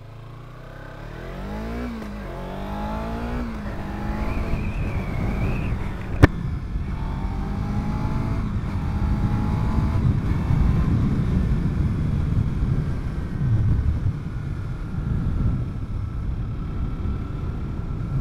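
2017 Kawasaki Z300's parallel-twin engine pulling away and accelerating up through the gears, its pitch rising and dropping back at each upshift about three times in the first six seconds, then running steadily at cruising speed with wind noise. A single sharp click about six seconds in.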